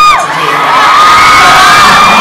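Audience screaming and cheering: several loud, high-pitched shrieks overlapping, each held for a second or more.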